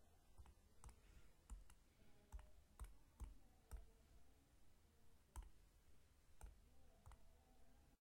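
Faint computer mouse clicks, single and irregular, about one or two a second, pressing keys on an on-screen calculator emulator.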